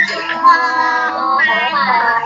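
A group of young children chanting a Thai consonant recitation in a sing-song unison, "ฟอ ฟัน ฟอ", over a video call. Several voices overlap and are slightly out of step.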